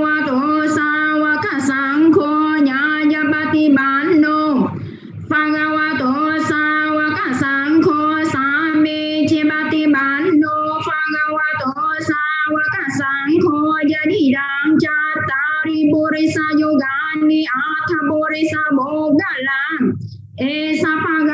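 A song sung in a high voice, holding long notes that slide between pitches, with one short break about five seconds in.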